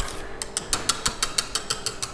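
A wire whisk beating thickened pastry cream in a stainless steel saucepan. Its wires click against the pan in a fast, even rhythm, about six or seven strokes a second.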